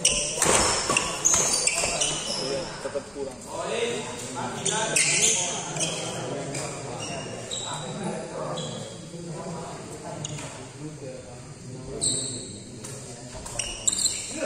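Badminton rallies: rackets striking the shuttlecock with sharp hits, echoing in a large hall, over people talking in the background.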